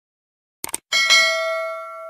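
Subscribe-animation sound effect: a quick double mouse click about two-thirds of a second in, then a bright bell ding that rings on and slowly fades.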